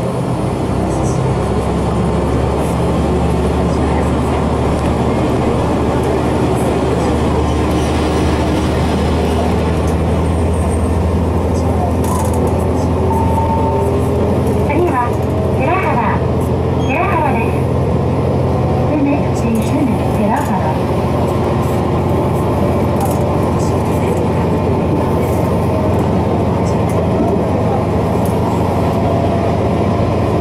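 Diesel railcar engine under load as the train pulls away from a station and gathers speed, heard from inside the car: a steady drone whose pitch slowly rises.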